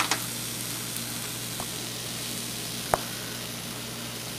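Pancake frying in a nonstick pan: a steady, soft sizzle, with one short click about three seconds in.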